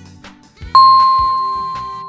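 A single bright chime sound effect strikes about three-quarters of a second in and rings on, slowly fading, over quiet background music: the quiz's time-up signal before the answer is revealed.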